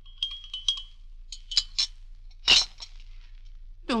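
China teacup and spoon clinking as a radio sound effect of tea being stirred and drunk: two quick clusters of light, ringing clinks, then one louder clink about two and a half seconds in.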